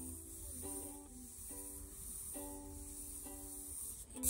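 Quiet background music of a plucked string instrument, a new note about every second.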